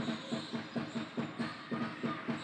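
Basketball being dribbled on a hardwood court: a quick, even run of bounces, about four a second.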